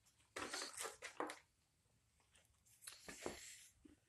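Faint rustling and handling noise in two short spells: hands moving over the cloth apron as the carving knife is set down and the ladle blank and tools are handled.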